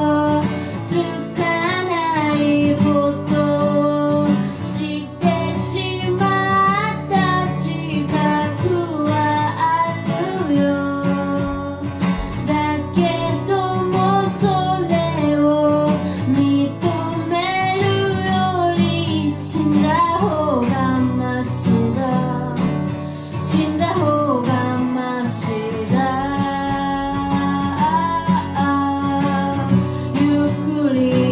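A solo singer singing a song while strumming an acoustic guitar, played live.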